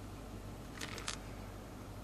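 Quiet room tone with a steady low hum and two faint, brief rustles about a second in.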